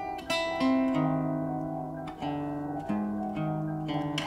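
Music: acoustic guitar picking single notes that are left to ring and overlap, about six new notes over the four seconds.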